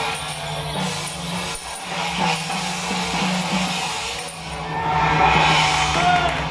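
Temple procession music with percussion and jingling metal, growing louder near the end.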